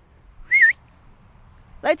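A person's brief whistle about half a second in: one short, wavering note.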